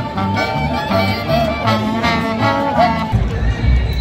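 Live jazz from a street band: a pitched melody line over steady, evenly pulsing plucked bass notes. About three seconds in the music cuts off and a low rumble takes over.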